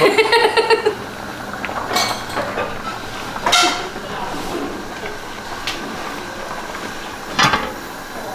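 Metal kitchenware clinking and knocking a few separate times as a spoon, pot lids and a stainless-steel bowl are handled on the stove, over a steady background hiss.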